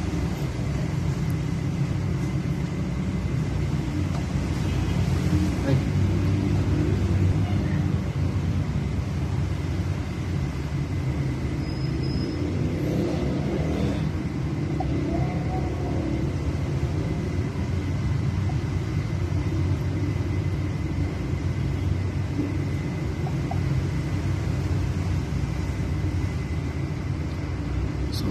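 A steady low rumble, with a faint thin whine held steady high above it.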